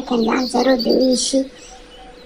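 A person's voice speaking, which stops about one and a half seconds in, followed by a brief pause.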